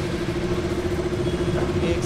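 KTM RC 200's single-cylinder engine idling steadily just after being started.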